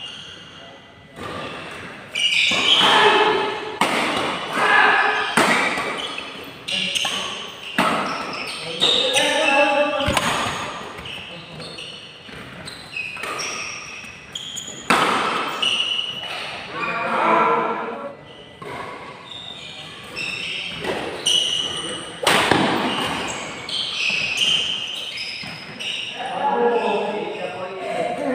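Badminton rally in a reverberant indoor hall: sharp racket strikes on the shuttlecock at irregular intervals, with voices in the background.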